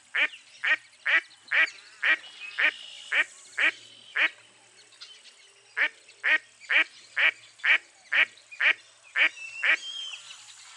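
Mottled duck quacking: a run of short, evenly spaced quacks, about two a second, then a pause of about a second and a half, then a second run at the same pace.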